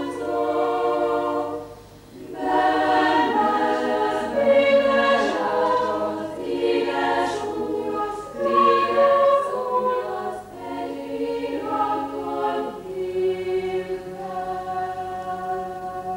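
School chamber choir singing unaccompanied in several parts. There is a short break for breath about two seconds in, and the last few seconds are one long held chord.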